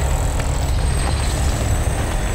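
Deep, steady mechanical rumble of a claw drill, a huge mining drill, boring through rock: a sound effect in an audio drama.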